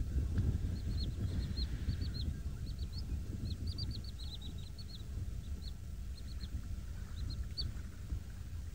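Small birds chirping: many short, high chirps in irregular runs, over a steady low rumble.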